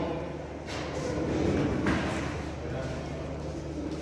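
Faint, indistinct talking in a hallway over a steady low hum, with a couple of soft knocks.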